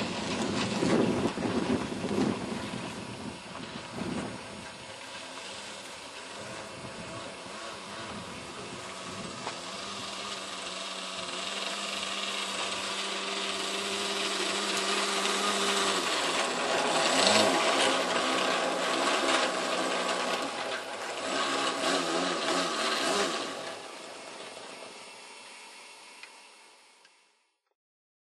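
Small model-aircraft engine (an OS of about 15 cc) on a 2 m biplane, running at low throttle as the plane rolls across grass. It is rough and uneven for the first few seconds, then holds a steady idle note for several seconds. After that it rises and falls with throttle blips, and it fades out at the end.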